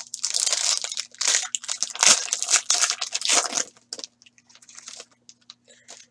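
Clear plastic packaging crinkling and rustling in the hands in a run of short bursts for about four seconds, then a few faint light ticks. A faint steady hum sits underneath.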